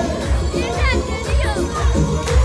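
Loud Kurdish wedding dance music for a govend line dance, driven by a heavy low beat, with guests' and children's voices calling over it, high gliding cries about twice.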